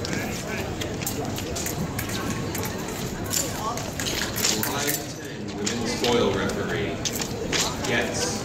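Busy fencing-hall background of many distant voices, with scattered sharp taps and clicks from the épée bout's footwork and blade contact, clustered about three and a half seconds in, around four and a half seconds, and near the end.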